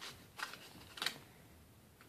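Two faint, brief rustles of a small packet of earplugs being handled in the fingers, about half a second and one second in.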